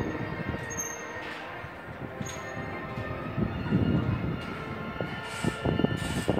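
A steady drone of sustained tones, like a held chord, with low rumbles of wind gusting on the microphone a few times, loudest about four seconds in and again near the end.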